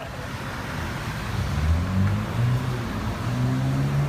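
Street traffic: a motor vehicle's engine running close by, its low hum rising in pitch in steps over the last few seconds, over a steady hiss of city street noise.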